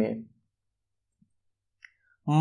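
A man's spoken word trails off, then near silence broken by a single faint, short click near the end.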